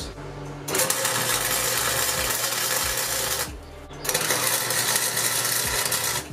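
Electric arc welder laying two quick tack welds on steel pipe: two spells of steady arc noise, the first about two and a half seconds long and the second about two seconds, with a short break between them.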